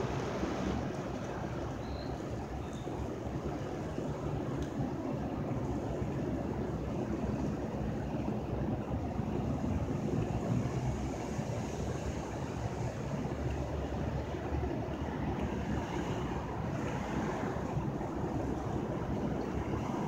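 Steady rumble of city street traffic mixed with wind on the microphone, with no distinct events.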